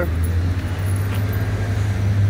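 A vehicle engine running steadily nearby: an even low drone with faint street noise over it.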